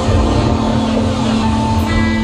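A live band's amplified instruments hold a steady drone, one sustained low note with higher held tones above it, over a heavy low rumble.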